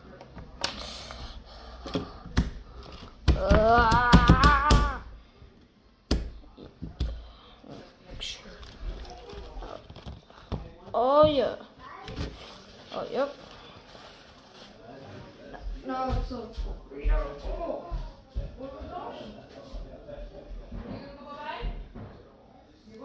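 A person's voice making sounds without clear words, with a loud wavering vocal note about three seconds in and a short rising vocal glide a little past the middle.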